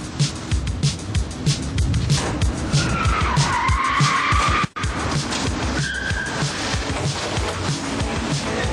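Car tyres squealing for about two and a half seconds, cut off abruptly, with a shorter squeal about a second later, over music with a steady drum beat.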